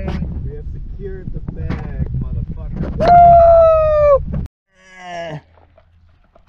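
A person's long, loud, drawn-out yell at about three seconds, holding one pitch and sagging at the end, over the low rumble of a car cabin on the move. Short bits of voice and laughter come before it. The rumble cuts off suddenly at about four and a half seconds.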